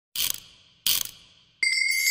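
Animated-intro sound effects: two short rattling bursts, then a bright ringing chime about a second and a half in that sets off the festive intro music.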